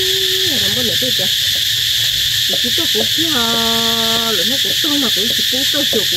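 A person's voice speaking in a sing-song way, with two drawn-out notes held steady, one near the start and a lower one for about a second midway, over a loud, steady high hiss.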